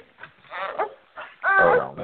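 A dog's short vocal calls, several in a row, the loudest and longest near the end with a wavering pitch.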